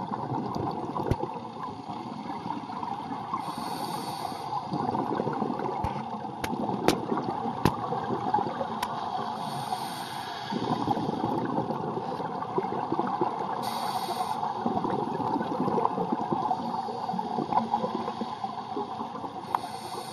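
Scuba diver breathing through a regulator underwater: four short hissing inhales about four to five seconds apart, each followed by bubbling on the exhale, with a few sharp clicks.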